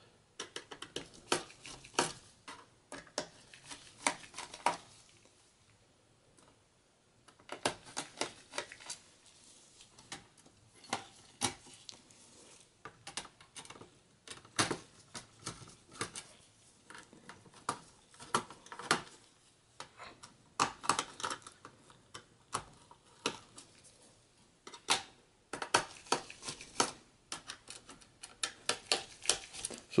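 Mini Phillips screwdriver clicking and scraping against the screws and plastic bottom cover of a laptop: a long run of light, sharp clicks and taps, with a pause of about two seconds a few seconds in.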